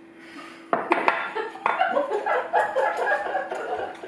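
A spoon clinking and scraping against a bowl as a liquid Jello mixture is stirred, with sharp clinks starting about a second in. Muffled voice sounds run alongside.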